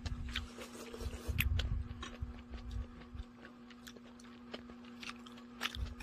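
Mealtime table sounds: scattered light clicks of chopsticks and spoons against plates and steel bowls, with some chewing, over a steady low hum.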